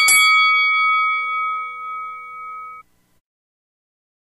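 A metal bell struck right at the start, its ringing tone fading over about three seconds and then cutting off suddenly, closing the show's break sting.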